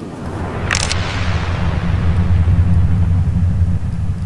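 Steady low rumble with a hum: the background noise of the room recording, with a short sharp knock just under a second in.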